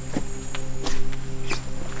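A few footsteps as a person climbs down over a debris-strewn floor, heard over background music with sustained low tones.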